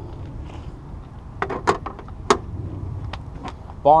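A few sharp clicks and knocks, as a metal licence plate is handled at the open rear cargo area of an SUV, the loudest a little past the middle, over a steady low rumble.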